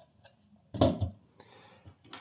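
A single short knock about a second in, then a faint tick: the aluminium-cased power inverter being set down on a hard tabletop.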